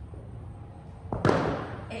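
A rubber bumper weight plate set down onto a rubber gym floor: one heavy thud about a second in, with a short ringing tail.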